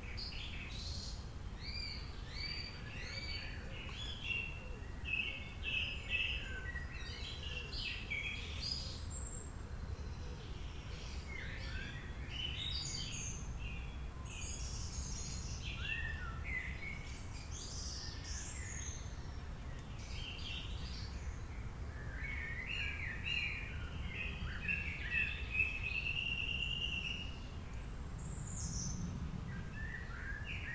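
Birds calling: many short, overlapping chirps and calls, some sliding down in pitch, with a denser run of calls toward the end, over a low steady rumble.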